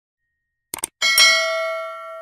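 A quick double mouse-click sound effect, followed about a second in by a bright notification-bell chime that rings on and slowly fades.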